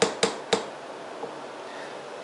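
Three quick knocks from a spatula tapped against a springform cheesecake pan, in the first half-second, followed by quiet room tone.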